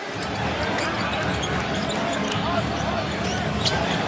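Arena crowd noise in a large hall, with a basketball being dribbled on the hardwood court.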